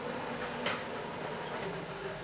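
Lottery ball-drawing machine running as a ball is drawn: a steady mechanical hum and rattle, with one sharp click about two-thirds of a second in.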